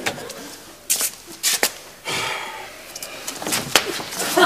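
A wooden door being opened: sharp latch clicks and knocks in the first second and a half, a brief rustling stretch about two seconds in, then two more knocks near the end.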